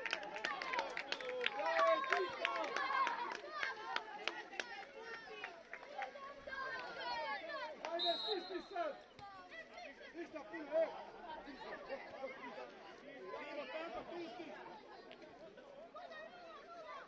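Many overlapping, indistinct voices chattering and calling out, busier in the first few seconds and fading later, with a brief high whistle blast about halfway through.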